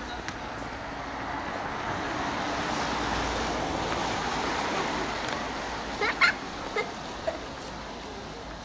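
A car passing on the street, its road noise swelling to a peak midway and then fading, with a few short, sharp sounds about six seconds in.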